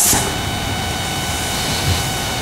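Steady hiss with a faint, even hum: the background noise of the room and its recording, with no speech.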